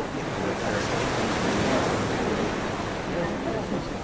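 Steady rushing background noise with faint, indistinct voices murmuring under it.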